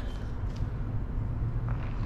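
Steady low rumble of outdoor city background noise, mostly distant traffic.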